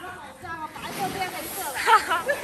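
Long twig broom sweeping drying rice grain across concrete, a hissing swish that grows louder toward the end.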